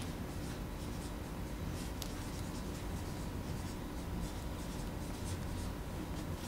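Faint scratching of a pen writing on paper, in irregular strokes, over a steady electrical hum.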